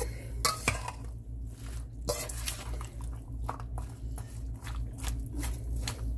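A metal slotted spatula scraping and clinking against a stainless steel mixing bowl in irregular strokes as sliced zucchini, squash, onion and carrots are tossed in vinaigrette, with a steady low hum underneath.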